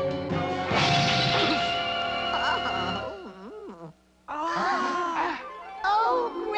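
Cartoon soundtrack music with a loud crash about a second in, followed by warbling sounds that glide up and down; it briefly drops out just before the middle, then a louder burst of gliding sounds comes in.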